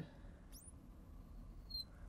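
Marker tip squeaking faintly on a glass lightboard while a curve is drawn: a short rising squeak about half a second in, and another brief high squeak near the end.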